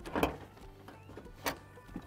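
A 4WD's bonnet being unlatched and lifted open: a soft click just after the start, then a sharp click about a second and a half in.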